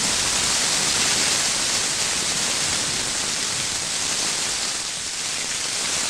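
Heavy rain pouring steadily, splashing onto a paved courtyard floor.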